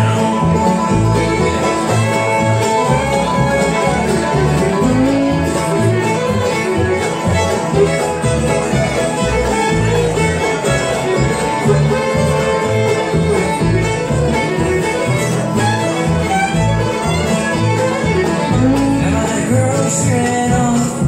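Live acoustic bluegrass band playing an instrumental break between sung verses: fiddle, banjo and acoustic guitars over an upright bass keeping a steady beat.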